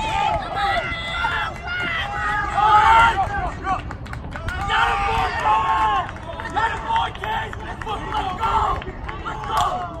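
Several people yelling and cheering at once, urging on a baseball runner heading for home plate. The shouts are high-pitched and overlapping and peak about three seconds in.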